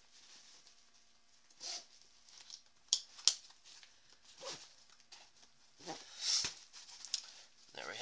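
Backpack fabric rustling in short bursts as its top is rolled down tight and cinched shut, with a couple of sharp clicks about three seconds in and a louder rustle near the end.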